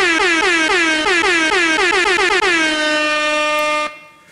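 DJ-style air horn sound effect: a rapid run of short, loud blasts, each dipping in pitch, then one long held blast that cuts off sharply just before the end.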